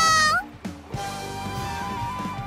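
A high-pitched, drawn-out shout of "You!" ends with an upward lilt about half a second in. Soft background music with held notes follows from about a second in.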